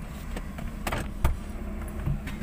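Low, steady rumble inside a car's cabin, with a few light clicks and one sharper knock a little over a second in.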